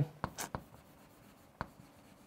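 Chalk on a chalkboard: a few short taps and strokes in the first half second, then one more sharp tap about a second and a half in.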